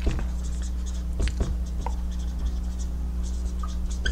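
Dry-erase marker writing on a whiteboard: a quick, irregular run of short strokes as letters are written, over a steady low hum.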